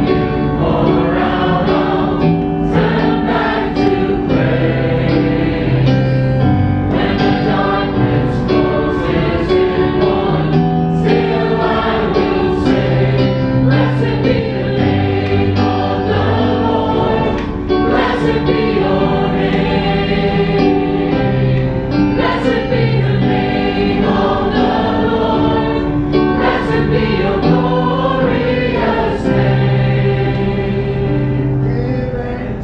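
A group singing a worship song together, accompanied by a keyboard playing sustained chords with a bass line that moves every second or two.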